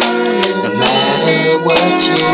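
Programmed backing track of an original pop song, with layered pitched instruments over a steady beat of about two hits a second, between sung lines.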